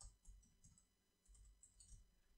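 Near silence with faint computer keyboard typing: a scattering of soft key clicks.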